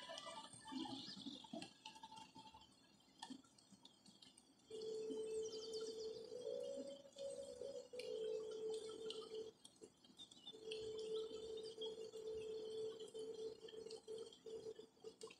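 Birds chirping faintly with short high calls, over an unidentified steady mid-pitched tone that starts about a third of the way in, steps up in pitch briefly and drops out for about a second before resuming.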